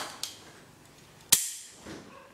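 Three short, sharp cracks, the last and loudest about a second after the first two.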